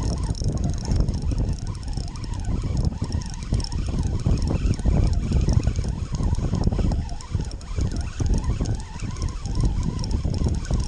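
Wind buffeting the microphone in a loud, gusty rumble while a spinning fishing reel is cranked in, with a faint high whine running underneath.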